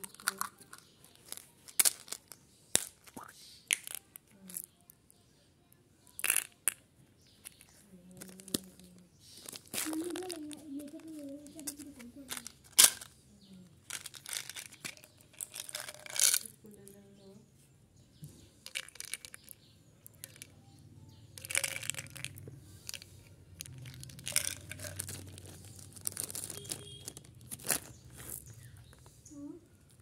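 Plastic candy containers and foil wrappers being handled: sharp clicks and taps of small plastic jars and bottles being opened, short bursts of crinkling and tearing wrapper, and small candies rattling out into a hand.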